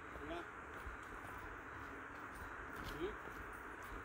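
Quiet outdoor background: a faint steady hiss, with two brief faint voice-like sounds, one just after the start and one about three seconds in.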